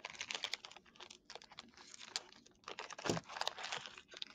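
Irregular light clicks and clatter of small hard objects being handled on a desk, with a duller bump about three seconds in.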